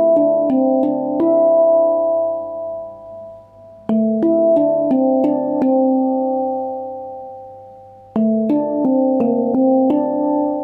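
Handpan (hang drum) tuned to D minor Kurd, played with the hands: three short runs of quick note strikes, near the start, about four seconds in and about eight seconds in, each left to ring on and slowly fade.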